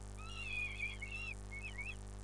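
Young peregrine falcons giving a run of short, wavering begging calls, high whines that rise and fall, as an adult feeds them in the nest box. A steady electrical hum runs underneath.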